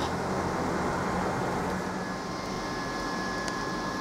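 A steady mechanical background hum, like a running fan, with a faint thin whine that joins about halfway through.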